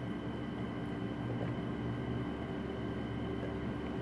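Steady low engine drone of a utility truck, muffled through the walls of the house, with a few constant hum tones and no change in level.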